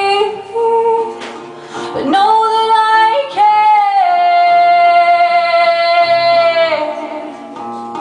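A woman singing live to her own acoustic guitar, drawing out a long held note from about three and a half seconds in until nearly seven seconds, then dropping to quieter guitar and voice.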